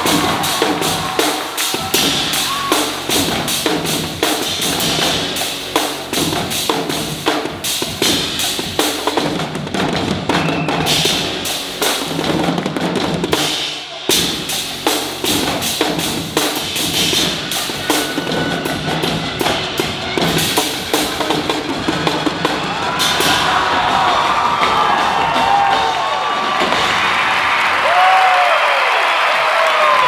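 Drum-heavy live band music with a driving kit beat of kick and snare hits. The drum hits thin out over the last several seconds as the music turns into a fuller, sustained wash.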